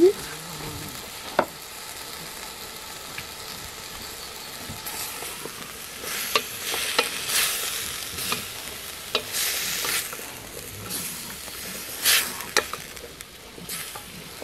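A wooden spoon stirring soup in a metal pot, in short scraping strokes with a few sharp knocks against the pot, starting about five seconds in. Under it a steady hiss from the wood fire burning beneath the pot.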